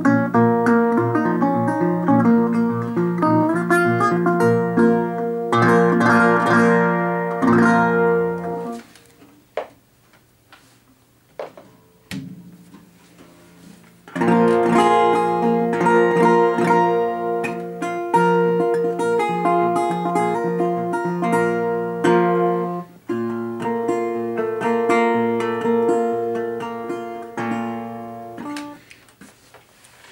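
A single-cone National Style-O resonator guitar with a nickel-plated brass body, fingerpicked with fretted notes. The first stretch is played on the 1932 guitar and stops about nine seconds in. After a few seconds of odd notes and knocks as the guitars are swapped, playing resumes on the 1936 Style-O, with a brief break partway and a fade near the end.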